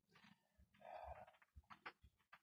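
A man's quiet wordless vocal sound, about half a second long, a little under a second in, followed by two short sharp sounds near the end; it comes during what he calls a seizure.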